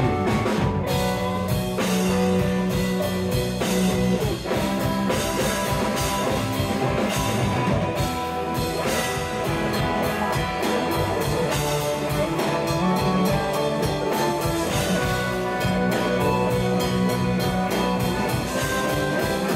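Live rock band playing an instrumental jam: electric guitars over bass and a drum kit keeping a steady beat.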